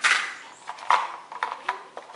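Small loose parts clicking and rattling as a hand rummages through a plastic organizer bin: a short scrape at the start, then a string of light clicks.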